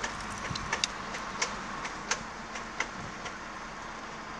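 A steady background hiss with a few faint, irregular clicks and ticks scattered through it. No engine note or voice is present.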